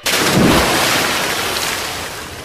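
A sudden clap of thunder with the hiss of rain, a sound effect opening a film song: it starts abruptly, rumbles low about half a second in, and slowly dies away.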